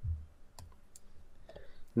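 A few faint computer mouse clicks, with a short low thump at the start. The clicks come as the next slide is selected.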